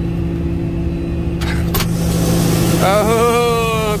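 Combine harvester running steadily, heard from inside the cab, as it unloads grain through its unloading auger. A couple of sharp clicks about a second and a half in, and a long drawn-out voice call near the end.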